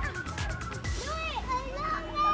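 Children shouting and calling out at play, short high-pitched calls rising and falling, over background music.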